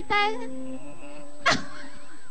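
A high-pitched, whining voice trailing off in the first half-second, then a single sharp knock about one and a half seconds in.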